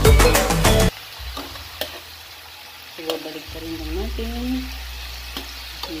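Background music with a beat cuts off about a second in, leaving thin slices of marinated beef sizzling in oil in a nonstick frying pan. From about halfway a faint voice sounds over the sizzle.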